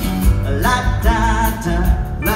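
Live country-rock band playing: electric and acoustic guitars, bass guitar and a drum kit, with a steady drum beat and sustained melody notes, in a concert hall.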